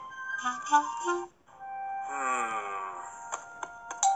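Gentle background music from an animated children's storybook app, with a cartoon character's wordless vocal sound gliding down in pitch in the middle and a few sharp clicks near the end.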